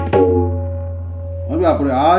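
Tabla: a last stroke just after the start, then the drums left ringing, with the bayan's deep bass hum sustained for about a second and a half. A man's voice comes in near the end.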